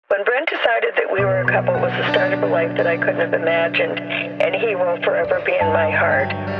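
Thin, radio-like recorded voices talking, starting suddenly out of silence. Held low notes of music come in underneath about a second in, pause briefly and return near the end.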